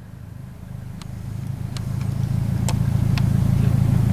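Nissan S13 drift car's engine running with a low, steady rumble that grows steadily louder, a car with a stall problem that keeps dying. A few faint clicks are heard in the first three seconds.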